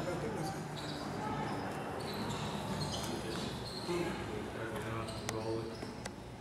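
Indistinct talk from people in a large room, with a few short knocks, the sharpest about five seconds in.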